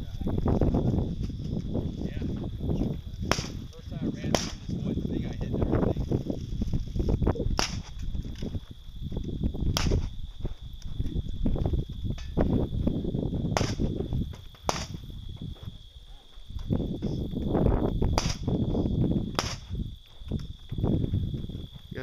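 Sharp gunshots, about eight, spaced irregularly one to four seconds apart, over wind rumbling on the microphone.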